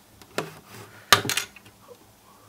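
Hard plastic clicking and knocking as a hand works the lid of a Brita filter bottle: one sharp click about half a second in, then a quick cluster of louder clicks a little after a second.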